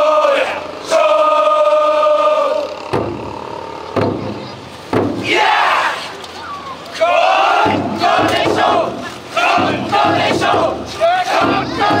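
Men of the Kokkodesho drum-float team shouting together: a long call held by many voices in the first few seconds, then from about five seconds in a run of short, overlapping shouts and calls.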